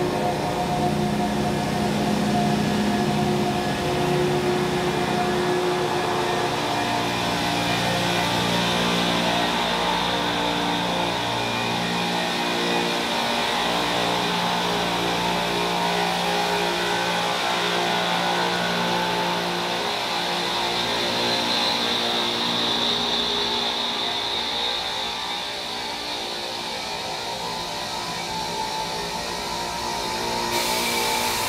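Speno rotary rail-grinding train passing close by, its rotating grinding stones on the rails making a steady grinding noise along with the machine's running gear, mixed with background music of held notes.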